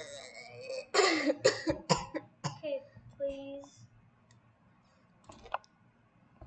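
A child's wordless vocal reaction: a quick run of five or six sharp cough-like bursts about a second in, then a short held vocal sound, followed by a single faint click near the end.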